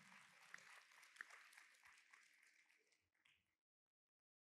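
Near silence: faint room hiss with a few soft clicks, cutting off to dead silence about three and a half seconds in.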